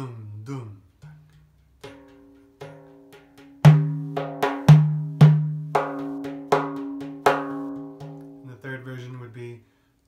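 Frame drum struck by hand: a few soft taps, then a run of loud, deep ringing bass "doom" strokes with lighter strokes between, a variant of the nine-beat karşılama rhythm with the dooms stacked at the beginning.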